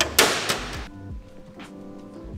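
A drink bottle dropping into a vending machine's collection bin: one loud, short rattling thud just after the start, dying away within a second. Background music with a beat plays throughout.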